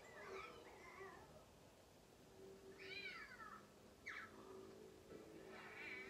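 Faint meowing of a cat: one rising-and-falling call about halfway through, then a short falling call about a second later.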